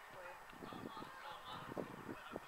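Distant shouts from players on an outdoor football pitch, heard faintly over a few dull thumps.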